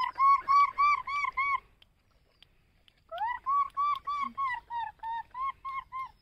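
A bird calling in two bouts of rapid, evenly repeated clear notes, about four a second. The second, longer bout dips slightly in pitch.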